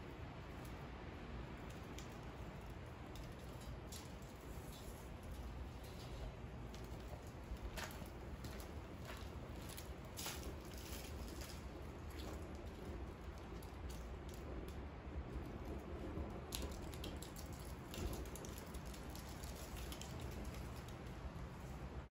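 A small fire burning in a metal can, giving faint scattered crackles and ticks over a steady low outdoor rumble.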